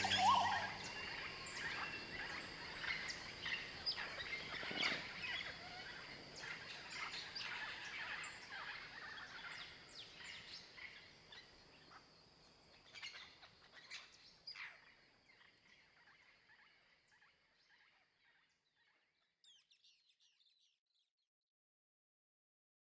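Rainforest ambience: scattered bird calls and chirps over a steady high-pitched drone, fading out gradually to silence, with a few last calls near the end. The closing music stops right at the start.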